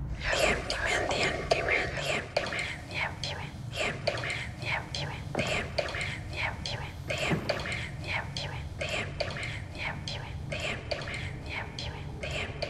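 A horror-trailer whispering effect: many overlapping whispering voices, one sharp hiss after another, over a low steady rumble.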